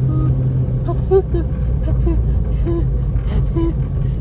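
Inside a car driving on a wet, slushy road: a steady low rumble of engine and tyres, with scattered faint clicks.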